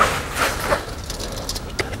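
Hydraulic floor jack being pumped slowly to lift a UTV's front track: a click at the start, then a few faint knocks, with low shop background noise between.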